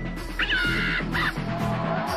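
Background music with a steady beat, with a comic sound effect laid over it: two pitched, call-like squawks, a longer one about half a second in and a short one just after a second.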